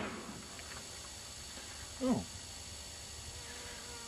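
Quiet outdoor background with a faint steady hiss. About two seconds in, a man's voice gives one short, falling 'Oh.'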